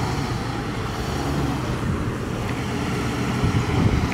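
Shuttle bus engine running with road noise as the bus drives along, a steady sound with a low engine hum throughout.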